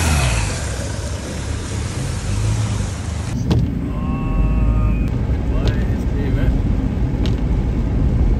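The Audi S3 replica's 1.8T turbo four-cylinder engine running and fading within the first second as the car drives off. After a sudden cut about three seconds in, a steady low rumble follows, with a brief tone about four seconds in and a few sharp clicks.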